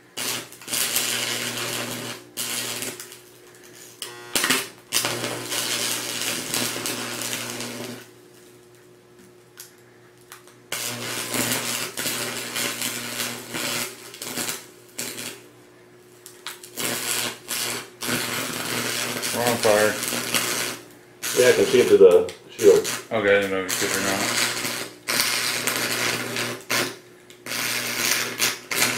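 Stick (arc) welder's arc burning into a laptop hard drive: crackling, sputtering runs with a steady buzz under them, struck and broken several times, with a pause of a few seconds about a third of the way in.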